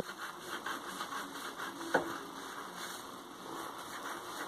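Scissors snipping through folded crepe paper, a quick run of short cuts, with one sharper click about two seconds in.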